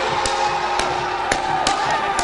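Group singing or chanting, the voices wavering in pitch, with sharp percussive strikes at an uneven pace of two to three a second, accompanying a traditional Ghanaian line dance.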